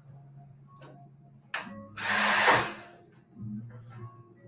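Espresso machine steam wand purged: one short, loud hiss lasting under a second, about two seconds in, after a few sharp clicks and knocks of cups and metal.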